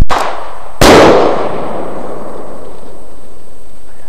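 A 9 mm blank pistol fires a bird-scarer (Vogelschreck) cartridge: a sharp shot, then a moment later a very loud bang as the cartridge bursts in the air, its echo rolling away over a second or so.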